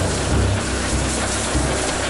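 Pork sizzling on a round tabletop barbecue grill, a steady dense hiss, with background music's bass pulsing underneath.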